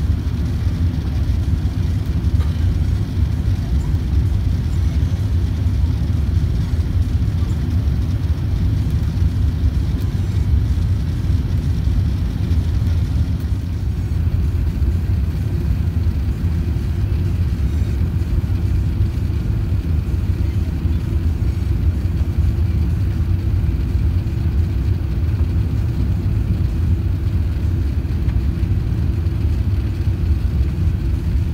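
Steady low rumble of engine and airflow noise heard inside the passenger cabin of an Airbus A380-800 descending on final approach.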